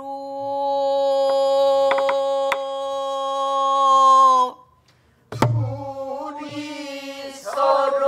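Pansori voices singing a long held note together, with a few light knocks on the buk barrel drum. A little past halfway the singing stops briefly, one deep buk stroke sounds, and the voices come back in wavering before settling on a held note again.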